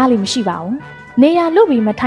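A storyteller's voice narrating in Burmese, with long gliding vowels, over faint background music.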